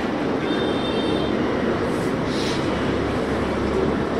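Steady, even background noise, a low rumble with hiss above it, with no speech.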